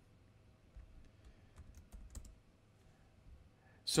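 A handful of quiet, scattered keystrokes on a computer keyboard as code is typed.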